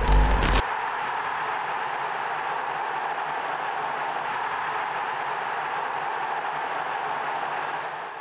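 A short digital glitch sound effect, which cuts off suddenly about half a second in. It is followed by a steady, even bed of noise under the end card.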